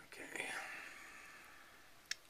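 A man's whispered, breathy "okay", trailing off over about a second.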